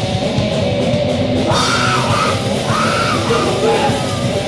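Live punk rock band playing loud with bass guitar and drum kit; yelled lead vocals come in about a second and a half in.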